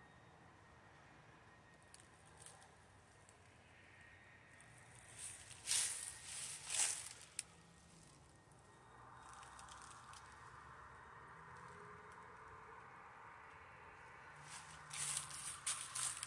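Faint outdoor ambience, broken by short bursts of hissing noise about six seconds in and again near the end.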